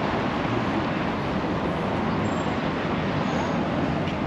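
Steady road traffic noise from cars driving around a cobblestone roundabout, tyres rumbling on the cobbles.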